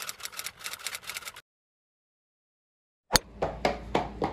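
A rapid, irregular run of clicks and taps that stops dead, followed by nearly two seconds of total silence where the recording cuts. It resumes with a sharp click and more tapping.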